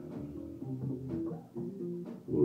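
Electric bass and electric guitar playing a few quiet, held notes live on stage, one note after another.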